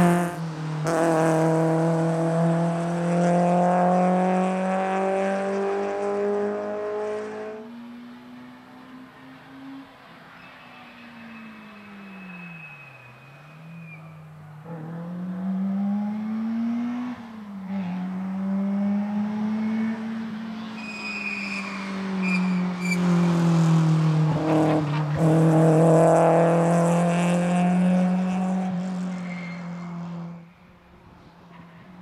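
Citroën Saxo VTS race car's four-cylinder engine running hard at high revs, loud and close for the first several seconds and again near the end. In the quieter middle stretch the pitch dips and climbs again twice between corners.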